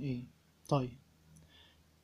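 A man says "Okay" once, with a few faint clicks from a ballpoint pen tapping and marking a paper workbook page.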